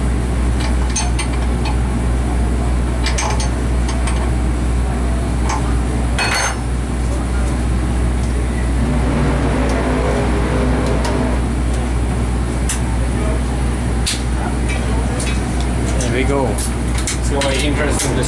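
Metal clinks and taps as a spark plug and its fittings are handled in an ignition test fixture, thickest near the end, over a steady low hum.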